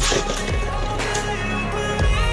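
Beyblade Burst spinning tops launched into a plastic stadium, spinning and grinding on the floor, with sharp clacks as they land and hit each other, about half a second apart near the start. Background music plays throughout.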